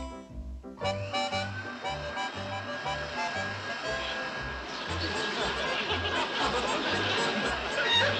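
Comic background music with a bouncing bass line plays over an upright vacuum cleaner running. A steady whine comes in about a second in, and a rushing noise builds louder toward the end as the cloth bag balloons up.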